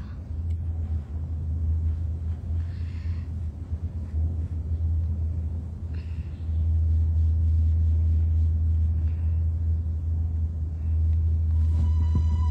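A steady low hum that grows louder about six and a half seconds in, with two faint short hisses around three and six seconds.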